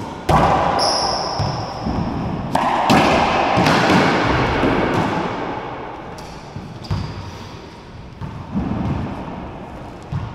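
Racquetball rally in an enclosed court: the hollow rubber ball cracks off racquets, walls and floor in a string of sharp hits, each ringing out in the echoing court. A couple of high sneaker squeaks on the hardwood floor come in between, the longest about a second in.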